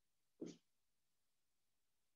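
Near silence, broken once about half a second in by a single short stroke of a marker on a whiteboard.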